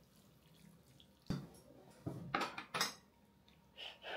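Chopsticks and a metal frying pan clicking and scraping as saucy noodles are pushed off onto a plate: a single click about a second in, a quick run of clicks and scrapes after two seconds, and another click near the end.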